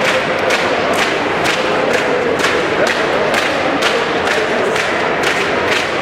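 Arena crowd shouting and chanting in support, over a steady rhythmic beat of sharp strikes about twice a second.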